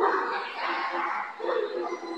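A dog barking and yipping several times, the first call sudden and loud, with people's voices mixed in.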